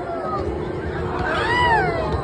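Riders screaming on a swinging giant pendulum ride, several voices overlapping, with one loud scream rising and falling in pitch about one and a half seconds in, over a steady low rumble.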